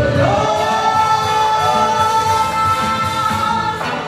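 A song with band accompaniment: a voice slides up into one long held note and stops just before the end, over a steady beat.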